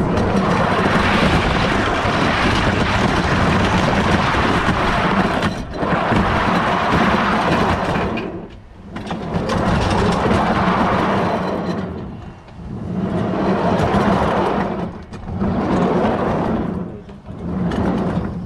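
Wooden backyard roller coaster car rolling along its wooden track: a loud, continuous rumble and rattle of the wheels with a steady low hum, easing off briefly about five times and swelling again.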